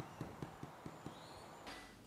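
A quick run of about six faint, light knocks within the first second, then near silence.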